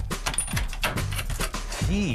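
Wooden trapdoor mechanism being sprung by pulling its cord: a quick run of rattling clicks and knocks.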